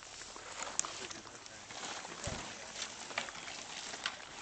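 A green plastic in-ground access lid being worked loose and lifted off by hand: a few light clicks and one dull thump, over steady open-air background noise.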